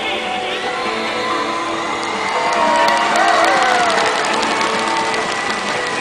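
A woman's wordless vocal in Chinese folk-opera style, sliding up and down in pitch, over a Chinese traditional instrumental ensemble, recorded live from the audience. The voice comes in about two seconds in and is loudest in the middle.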